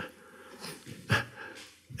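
A man's breathing and small mouth clicks, with one short, louder breath about a second in.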